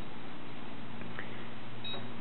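A short high electronic beep from the Watson-Marlow 323Dz peristaltic pump's keypad as a button is pressed, near the end, over a steady low hum.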